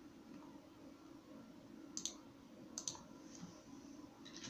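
Two faint computer mouse clicks about a second apart, each a quick press-and-release pair, over a low steady background hum.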